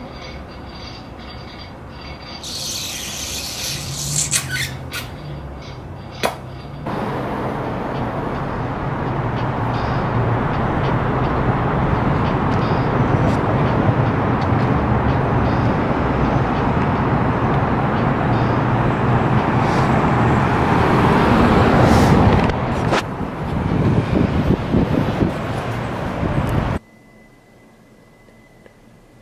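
City street traffic noise: a large vehicle's engine hum under a loud rushing that builds for about fifteen seconds and then cuts off suddenly near the end. A brief high hiss comes a few seconds in.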